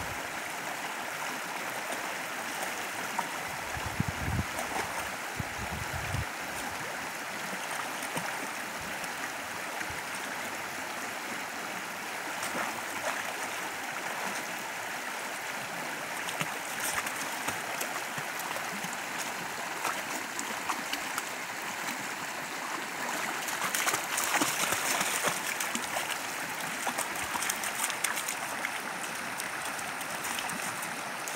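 Shallow rocky creek running steadily over stones, with splashing as two border collie puppies wrestle and wade in the water, loudest about three quarters of the way through.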